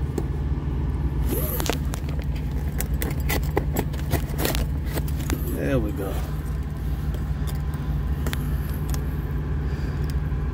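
Plastic fork scraping and tearing at the plastic packaging on a cardboard box: a run of small clicks and scrapes, busiest in the first half, over a steady low hum.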